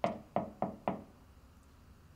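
Four quick knocks on an apartment door, all within about the first second, the first the loudest.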